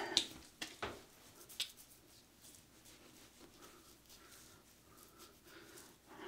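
A few brief splashes of water as a face is wetted by hand, then near silence.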